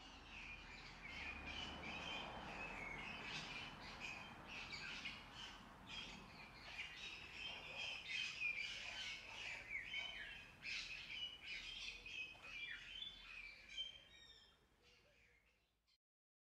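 Birds chirping and calling in quick, overlapping notes, fading out over the last couple of seconds.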